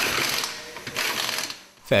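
Pneumatic impact wrench rattling as it runs the wheel nuts onto a freshly fitted winter tyre, in two bursts about a second apart.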